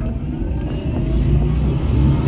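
Fiat X1/9 with a Hyper9 electric motor accelerating, heard from inside the cabin: a steady low road and wind rumble with a faint whine from the electric drivetrain rising in pitch as the car gathers speed.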